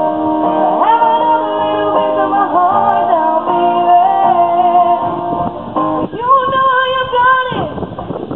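A female vocalist singing live, amplified through a microphone, over her own strummed steel-string acoustic guitar. Near the end she holds one long note before it drops away.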